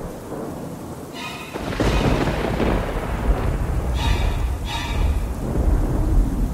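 Thunderstorm sound effect: steady rain with a long roll of thunder that swells about a second and a half in and keeps rumbling, with a few brief sustained musical tones over it.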